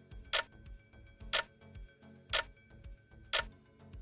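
Quiz countdown timer sound effect ticking like a clock: a sharp tick about once a second, with a softer tock between each.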